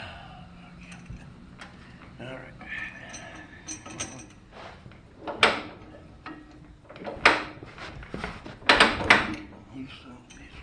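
Wisconsin VP4 air-cooled four-cylinder engine being hand-cranked and turned over without catching, with clunks from the crank and four loud rasping heaves in the second half. It is not yet getting fuel.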